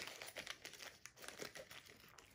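Faint crinkling and rustling of small plastic-wrapped packets being pushed by hand into a small zippered case.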